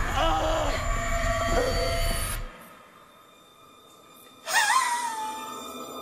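A man's anguished wailing scream from a TV drama soundtrack, breaking off about two and a half seconds in. After a quiet gap, a single wavering tone comes in and slowly falls.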